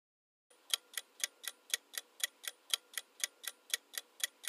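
Clock-ticking sound effect counting down a quiz answer timer: sharp, even ticks at about four a second, starting about half a second in after a brief silence.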